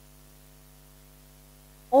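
Steady electrical mains hum on the recording, a low tone with several evenly spaced overtones. A woman's voice starts right at the end.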